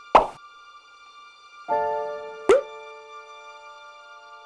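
Two short cartoon-style plop sound effects, one right at the start and one about two and a half seconds in, over soft background music. A held chord enters just before the second plop.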